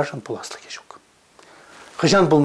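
A man speaking in a small room. His voice trails off about halfway through into a pause that holds only faint breathy sounds.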